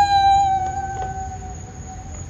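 Electric kick scooter motor whine: a high tone that climbs as the scooters pass close, then holds and slowly sinks in pitch, with a fainter lower whine rising under it.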